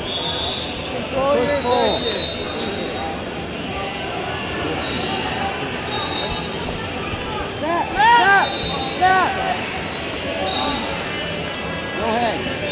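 Tournament hall noise: the steady din of a large, echoing gym with shouted coaching from the sidelines, loudest twice near the start and again about eight seconds in, and several short, high whistle-like tones from referees on other mats.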